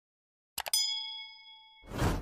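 Subscribe-button sound effect: two quick mouse clicks, then a bell ding that rings and fades over about a second. A rushing swell of noise starts near the end.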